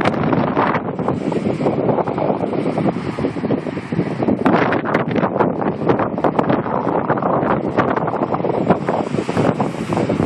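Wind buffeting the phone's microphone in loud, irregular gusts, with the rush of ocean surf underneath.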